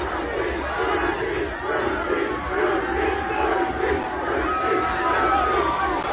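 Large crowd yelling and cheering, many voices at once, with some long held shouts in the second half.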